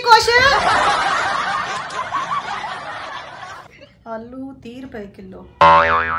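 Canned audience laughter for about three seconds, cutting off suddenly. Near the end comes a cartoon-style boing sound effect with a wobbling pitch.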